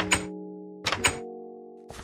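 Background music with held, sustained notes, cut through by heavy thunks of a wooden table and a mic stand being set down: one at the start, two close together about a second in, and a lighter knock near the end.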